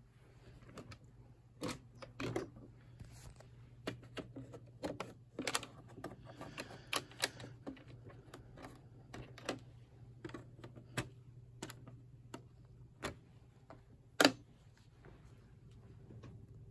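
Irregular clicks and light knocks of a plastic RC crawler truck being handled and turned over, with one sharper knock just after 14 s.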